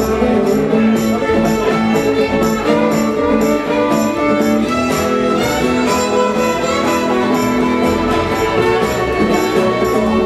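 Live acoustic string band playing: bowed fiddle over strummed acoustic guitar and plucked upright bass, with a steady beat.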